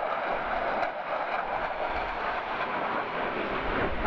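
A jet aircraft flying over: loud, steady engine noise.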